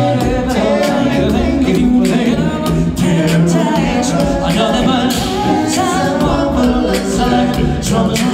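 A cappella group singing live on microphones: several male voices in harmony over a sung bass line, with a steady beatboxed vocal-percussion beat.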